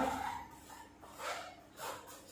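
The echo of a man's kiai shout fades in the first half second, then he breathes hard after a jumping kick: two short, sharp breaths about half a second apart.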